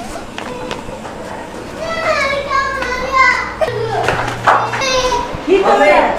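A child's high-pitched voice calling out, starting about two seconds in, with another call near the end.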